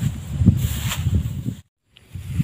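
Rumbling rustle and small knocks of a handheld camera being handled up close. The sound cuts off suddenly near the end.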